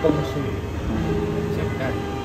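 Speech: a drawn-out 'a' held for about a second, over a steady low background rumble.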